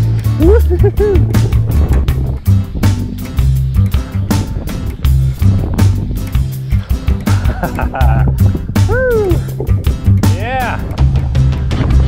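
Background electronic music with a steady beat and a heavy stepping bass line, with a few short swooping synth sounds near the end.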